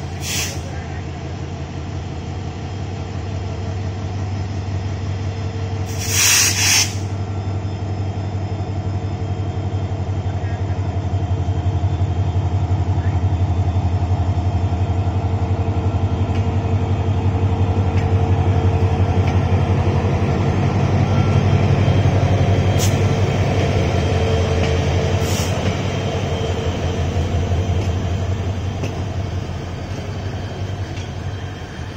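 Diesel-electric locomotive pulling a passenger train out of the station and passing close by, its engine running with a steady low drone that swells as it goes past, followed by the coaches rolling by. A loud double hiss about six seconds in.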